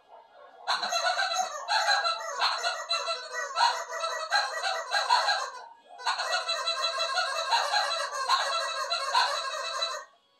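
Rapid, honking bird-like calls, a dense chattering run of them, broken by a short pause about six seconds in, then stopping abruptly.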